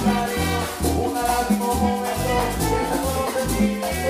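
Live salsa orchestra playing, with congas driving the rhythm under held melodic notes and a low bass line.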